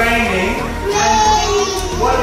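A children's song: young voices singing over a musical accompaniment.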